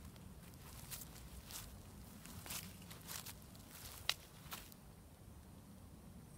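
Faint, irregular footsteps of a person walking slowly, with one sharper click a little past the middle.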